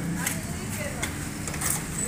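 A manual cup sealing machine being worked: a few short clicks and rustles as the plastic film is pressed onto a drink cup, over a steady low hum.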